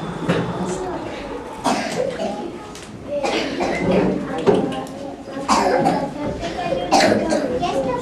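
Young children's voices and chatter, with four sudden, louder bursts spread through it.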